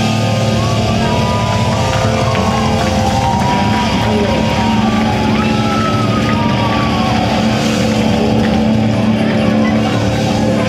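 Live rock band playing loud, with distorted electric guitars holding notes that slide up and down in pitch over a steady wash of drums and bass.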